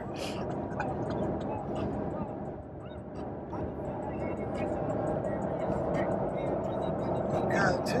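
Steady road and wind noise inside a moving car with a window open, and faint music and voices underneath.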